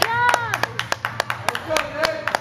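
Onlookers clapping quickly, about six claps a second, with a voice calling out over the claps at the start and someone speaking near the end.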